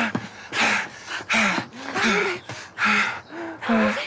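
Heavy panting: about five loud, gasping breaths, roughly one every 0.7 s, each with a short voiced catch, from someone out of breath after a struggle.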